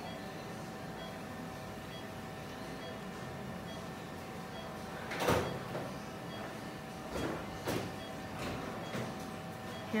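Steady hum of operating-room equipment, with one brief sharp noise about five seconds in and a few fainter ones later on.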